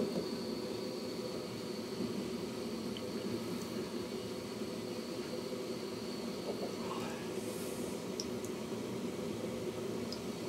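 Steady running noise inside a moving passenger train carriage: a low, even rumble of the wheels on the track, with a faint high whine that fades out about seven seconds in.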